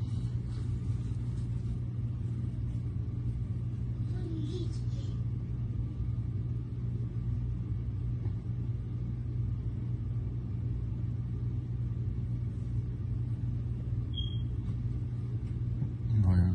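Steady low hum with no sharp impacts. There are faint brief sounds about four and a half seconds in and a short high beep near the end.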